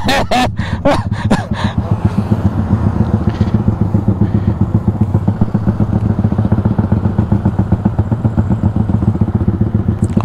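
Yamaha Y15ZR motorcycle, a single-cylinder underbone, idling at a standstill with a steady, even pulsing beat.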